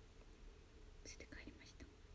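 Near silence with a steady faint hum, and a few faint whispered sounds of a woman's voice about a second in.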